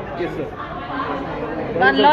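Speech only: people talking, with one voice louder and higher near the end.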